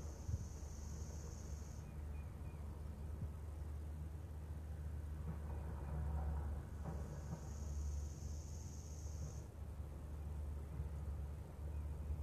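Slow, deep ujjayi breathing: long, soft, hissing breaths through the nose and throat, heard twice for a few seconds each, over a steady low outdoor rumble.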